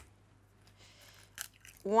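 A single sharp crack of an eggshell struck on the rim of a ceramic bowl, about a second and a half in, against quiet room tone.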